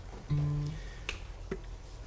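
A single short note on an acoustic guitar that stops after about half a second, followed by two sharp clicks.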